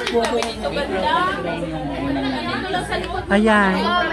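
Chatter: several people talking over one another, none of it clearly made out.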